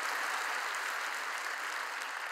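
A large congregation applauding steadily.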